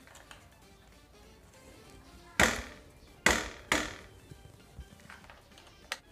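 Three sharp taps of a small metal hex key against a plastic Syncros direct-mount fender and its mounting bolts while the fender is fitted to a bike fork. The second and third taps come about half a second apart.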